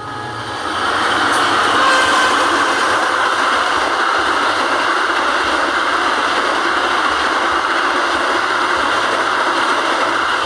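Passenger train passing close by at speed: a loud, steady rumble and roar of wheels on rails that swells in about a second in and holds steady as the coaches go past.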